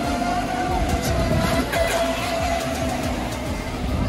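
Electric RC racing boats running at speed across the water, with a steady motor whine, over background music.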